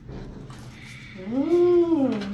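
A woman's voice making one drawn-out hummed or vowel-like sound, like an appreciative "mmm" or "ooh", starting a little past halfway. Its pitch rises, holds and then falls away.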